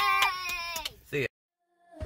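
A child's long, high-pitched squeal held on one pitch, ending just under a second in, followed by a brief spoken "See" and then silence.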